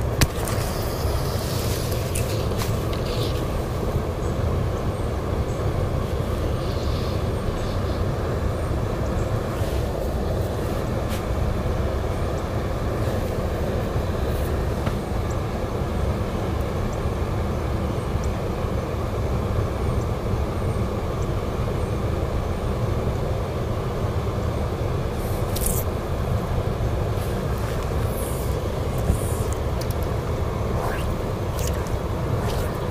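Steady low rumble of wind buffeting the boat-mounted camera microphone, with a few faint ticks near the end.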